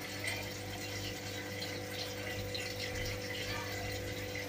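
Water pouring and splashing steadily into a fish tank, over the steady hum of a tank pump.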